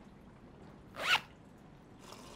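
Plastic zipper on a mesh document pouch pulled open in one quick zip about a second in.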